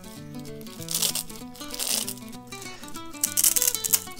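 Background music of held notes, with two rasping rips of a Velcro strap being pulled and pressed closed around the forearm, one about a second in and a louder one near the end.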